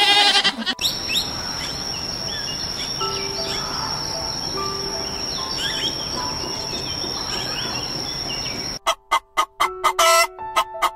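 A goat's bleat ends within the first second. Then comes aviary ambience: many short bird chirps over a steady high whine. Near the end a rapid pulsing sound of about five beats a second begins.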